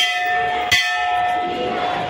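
Metal temple bell struck twice, about three-quarters of a second apart, each strike ringing on in a long, steady, clear tone.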